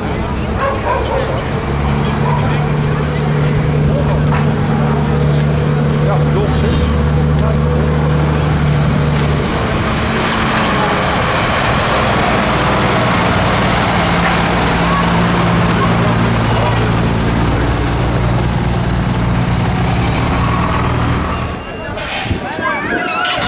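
Engine of a vintage fire engine running as the truck drives slowly past, a steady low note that changes pitch about halfway through, with a louder rush as it passes close by.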